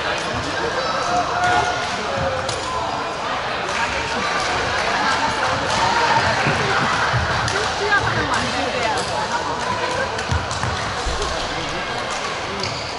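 Busy badminton hall: many voices talking and calling, echoing in the large hall, with scattered sharp knocks of rackets hitting shuttlecocks.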